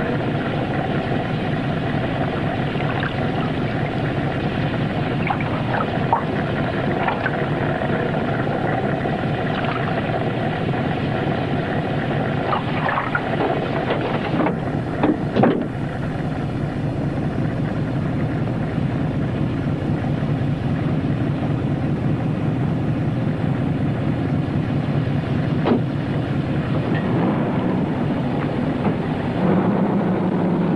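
Car engine running steadily, with scattered clicks and knocks, the loudest about halfway through.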